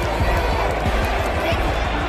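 Stadium crowd din: many voices at once with music in the mix, and frequent short low thumps.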